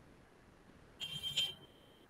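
A short, high-pitched electronic beep about a second in, lasting about half a second, over faint background hiss.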